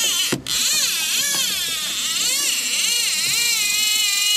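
Fishing reel being cranked at a steady pace, its gears giving a continuous wavering whine that rises and falls about twice a second, over a steady hiss.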